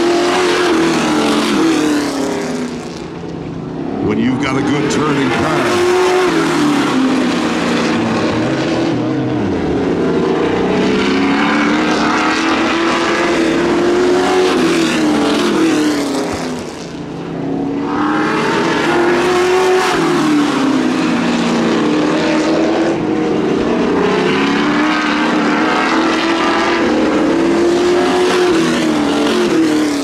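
Sportsman stock car engines racing on a short oval, the engine note climbing and falling over and over as the cars power down the straights and lift for the turns. The sound drops away briefly about three seconds in and again about seventeen seconds in.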